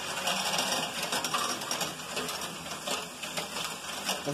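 LEGO Technic Great Ball Contraption modules running: motor-driven conveyor belts, gears and a stepper lift going steadily, with many small clicks and rattles of plastic parts and balls moving through them.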